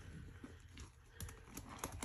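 A sponge soaked in thick, wet Foca powdered-detergent foam squelching as it is pressed into the sink and lifted out, with a run of small sharp crackles and pops from the foam in the second half.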